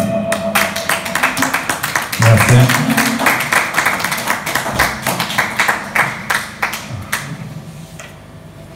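Small audience clapping at the end of a song, the applause thinning out and dying away near the end.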